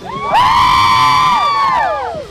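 Group of cheerleaders screaming and cheering together in one long, high-pitched shout that starts about a third of a second in and trails off with falling pitch near the end.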